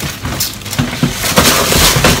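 Paper wrapping crinkling and rustling as it is handled, with irregular crackles that get louder near the end.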